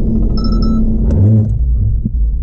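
Cabin noise of a 2019 BMW Z4 driving at about 60 km/h, a loud low rumble of road and engine with a steady hum. A brief high pulsing beep comes about half a second in, and after about a second the low note drops as the car brakes automatically to stop short of a pedestrian target.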